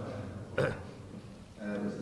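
A single short burp from the man at the microphone about half a second in, then a brief snatch of a man's voice near the end.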